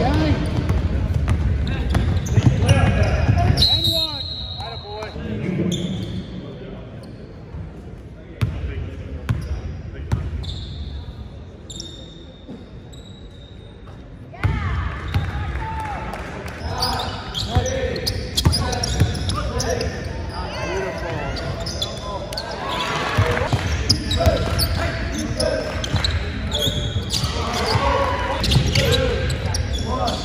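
Live basketball game sound in a gym: a ball bouncing on the hardwood court, with players and spectators calling out and talking, echoing in the hall. It is quieter through the middle and turns loud again abruptly about halfway through.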